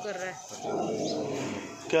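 A dog's drawn-out vocal sound lasting about a second in the middle, with no sharp barks.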